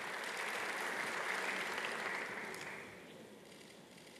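Audience applause that holds steady for about two and a half seconds, then fades away.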